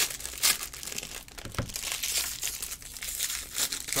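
Foil wrappers of Bowman Jumbo baseball card packs crinkling and tearing as packs are ripped open by hand, in irregular crackles.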